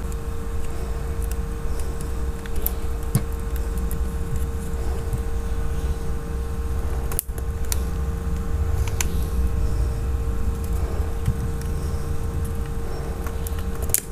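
Steady low background hum with a constant tone running under it. Over it come a few faint, scattered clicks and taps from a small screwdriver and hands working on a plastic phone casing.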